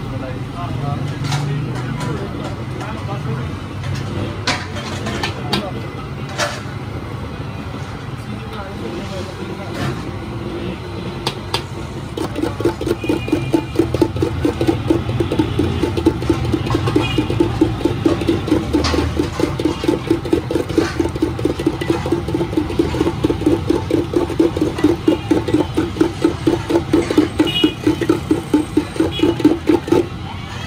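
A metal cup churned and scraped around a brass bowl of crushed ice in fast, even strokes, starting about twelve seconds in and growing louder. Before that, a low steady hum with a few sharp clicks, likely from the ladle on the steel milk pan.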